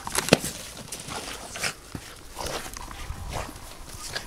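Two Boston terriers scampering and tussling over a toy on dry grass: scattered rustling and scuffing, with a sharp knock a moment in.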